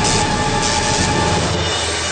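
Cartoon sound effect of the time machine in operation: a loud, dense, noisy machine sound with a steady tone in it, layered over background music. It fades out about one and a half seconds in, leaving the music's sustained notes.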